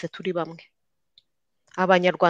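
Speech only: a voice talking in short, clipped bits, broken by about a second of dead silence before it resumes.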